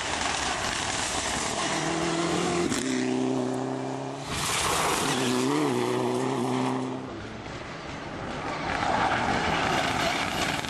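Mitsubishi Lancer Evolution rally car driven flat out through a corner, its engine held at high, steady revs with one quick blip about halfway, over a loud hiss of tyres sliding and spraying loose gravel. The engine note drops away after about seven seconds and the hiss swells again near the end.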